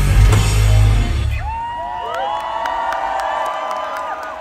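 A live rock band with electric guitars, bass and drums plays the loud final chord of a song, which cuts off about a second and a half in. The crowd follows with cheering, whoops and whistles.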